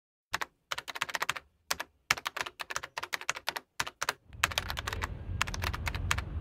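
Computer keyboard typing, quick runs of sharp key clicks with short pauses between them. From about four seconds in a low steady rumble comes in beneath the last clicks.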